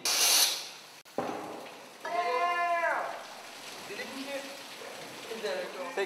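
Water splashing and hissing as a broom pushes it across a flooded concrete floor, for about half a second at the start. About two seconds in a voice lets out one long drawn-out call that rises and falls, followed by faint voices.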